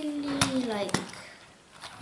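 A voice holding a long, wordless vowel that falls in pitch, with two sharp clicks about half a second apart during it. Then a short quiet stretch before speech starts again near the end.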